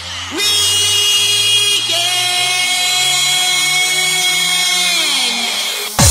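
Hard house dance music in a breakdown: the drums drop out and a held synth chord slides up in pitch, shifts about two seconds in, and slides back down near the end.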